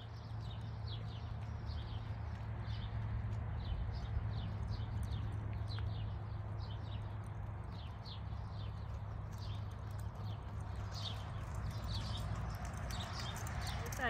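Gaited horse moving out under saddle on arena sand: rhythmic hoofbeats, about three a second, over a steady low hum.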